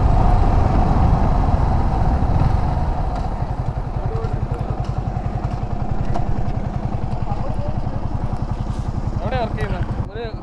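Yamaha sport motorcycle slowing down, with road and wind noise for the first few seconds, then its engine idling with a rapid, even pulse as the bike comes to a stop. A man's voice starts near the end.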